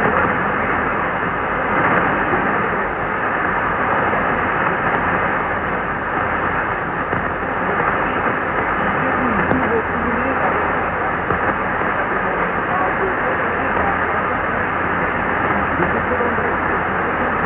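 Weak shortwave AM reception of Radio Congo on 6115 kHz through a Kenwood TS-2000 receiver: a steady, muffled static hiss with a faint voice barely showing through the noise.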